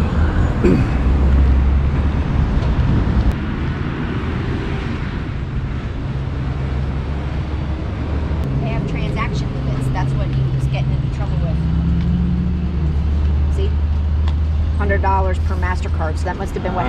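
Steady low hum of an idling vehicle engine, its pitch rising a little about twelve seconds in, with faint voices in the background.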